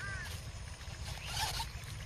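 A short rustling scrape about a second and a half in, over a steady low rumble, with a brief high chirp right at the start.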